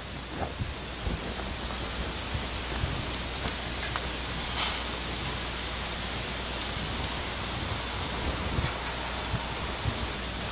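Pork loin chops sizzling on a grill grate, a steady hiss, with a few faint clicks of metal tongs as the chops are handled.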